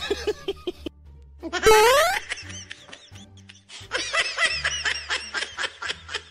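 Added comedy sound effects: short bursts of laughter, a loud rising whistle-like glide about a second and a half in, then a fast run of high-pitched laughter from about four seconds in.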